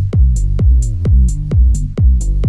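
Electronic techno track built on a Roland TR-707 drum machine. A steady four-on-the-floor kick lands about twice a second, each hit dropping in pitch, with offbeat hi-hats between the kicks over sustained low synth bass notes.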